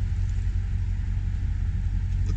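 Toyota Tundra's 5.7-litre V8 idling: a steady low rumble.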